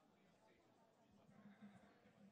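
Near silence, with faint voices talking in the background.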